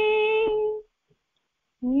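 A woman singing a song in Odia, holding one long note that ends about a second in. After a short silence, a new phrase begins near the end.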